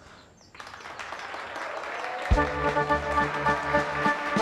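Audience applause builds from about half a second in. A little past halfway, loud brass-band music with held chords starts over the clapping.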